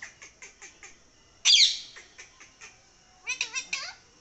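Rose-ringed parakeet calling: a few short sharp notes, one loud harsh squawk about a second and a half in, then a quick burst of warbling chatter near the end.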